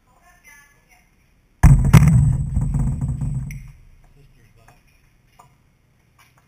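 A compound bow set down on the floor right beside the microphone. About a second and a half in there is a loud double thud, two hits close together, and a low rumble that dies away over about two seconds.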